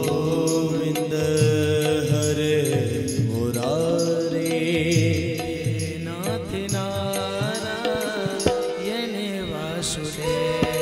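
A man singing a devotional Krishna kirtan in a chant-like style into a microphone, over musical accompaniment with a repeating low beat.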